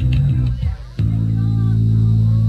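Electric bass guitar playing a slow, unaccompanied riff of low, sustained notes, with a short drop-out just before the middle and then one long held note.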